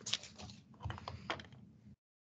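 Computer keyboard typing: a run of about eight irregular keystroke clicks that thins out toward the end.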